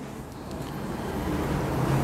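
Low, steady background rumble that slowly grows louder.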